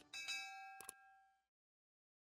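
Faint subscribe-button sound effect: a mouse click, then a bright bell-like ding that rings and fades out within about a second and a half. A quick double click comes a little under a second in.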